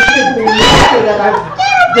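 A woman's high-pitched shrieks and squeals mixed with laughter, peaking in a harsh scream about halfway through.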